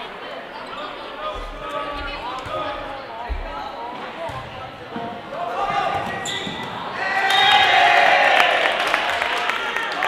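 Sounds of an indoor volleyball rally in an echoing gym: players and spectators calling out over one another, with sharp hits and low thuds of the ball and feet on the hardwood floor. About seven seconds in, the voices grow louder into a burst of shouting that lasts a couple of seconds.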